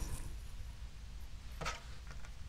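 Faint handling sounds as small plastic eye-drop vials are moved across a cutting mat, with one short click about one and a half seconds in.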